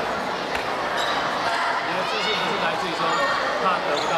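A dodgeball thudding and bouncing on a wooden gym floor, a few sharp impacts, amid girls' shouting voices in a large gymnasium.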